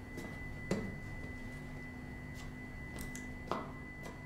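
A steady, thin, high-pitched electronic tone over a low hum, the ambience of a dim concrete corridor in a drama soundtrack, with two soft knocks, one just under a second in and one near the end.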